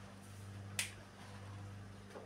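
A single sharp click a little under a second in, over a steady low hum.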